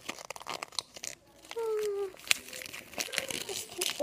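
A small printed packaging wrapper from a toy crinkling and crackling as it is handled and pulled at by hand. A short child's vocal sound comes about halfway through.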